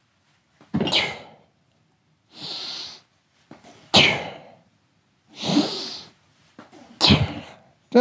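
Forceful breathing during weight-belt swings done kettlebell style: three sharp, hissing exhales about three seconds apart, alternating with softer breaths between them.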